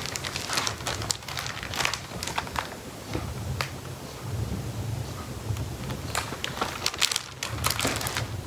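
A hardcover picture book being handled: paper rustling and scattered small clicks and taps as the open book is lifted up, held, lowered again and a page is taken to turn.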